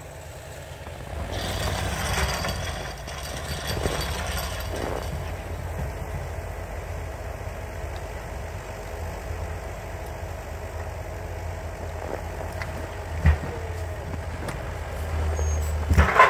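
A vehicle engine running steadily, its revs rising about a second and a half in and again near the end, with a single knock about thirteen seconds in.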